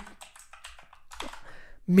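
Typing on a computer keyboard: a series of separate keystrokes, several a second.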